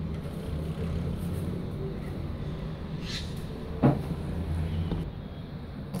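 Low steady rumble of a passing motor vehicle, dropping away about five seconds in. A single sharp tap sounds about four seconds in.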